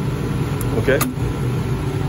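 Steady low hum of a Stulz water-cooled commercial air-conditioning unit running, with one short click about halfway through.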